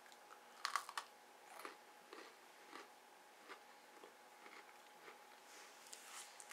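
A person biting into and chewing a crunchy chocolate sandwich cookie, a candy cane Oreo: one louder crunch just under a second in, then faint chewing crunches about every half second.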